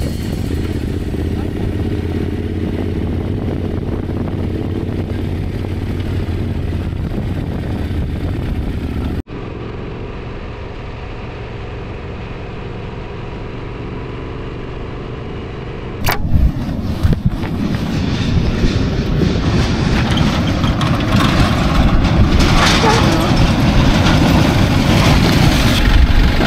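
Yamaha Super Ténéré parallel-twin motorcycle riding on a dirt road, its engine and road noise running steadily. The sound cuts abruptly twice, about nine and sixteen seconds in; after the second cut it is louder and noisier.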